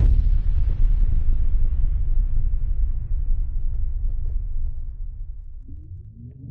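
A sudden deep boom, a produced impact effect, hits at once and rumbles away slowly over about five seconds. Near the end a plucked melody begins.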